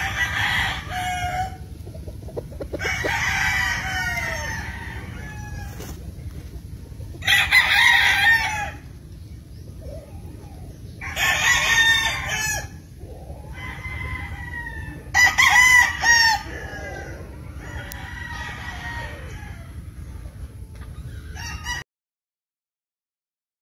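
Gamefowl roosters crowing repeatedly, about seven crows spaced a few seconds apart. Some crows are loud and near, others fainter and farther off, over a steady low rumble. The sound cuts off abruptly just before the end.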